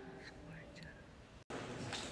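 Faint voices of people talking in the background, with no clear words. About one and a half seconds in the sound cuts out abruptly and comes back as somewhat louder chatter.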